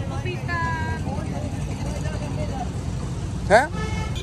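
Street ambience: a steady low rumble of road traffic with faint voices in the background, and a short, loud rising call from a voice about three and a half seconds in.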